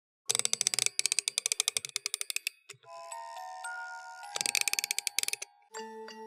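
Music box being wound: a burst of rapid ratcheting clicks that slows down, a few ringing notes, then a second short burst of clicks, and the music box starts to play a tinkling tune near the end.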